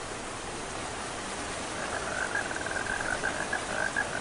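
Steady hiss of rain falling on woodland, slowly building, with a high, rapidly pulsing animal call joining in about halfway through.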